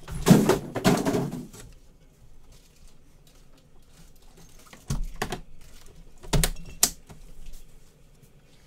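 Gold metal briefcase of a Panini Flawless football box being handled: a rattling shuffle near the start, then a few sharp clicks from its latches about five seconds in and again around six and a half seconds.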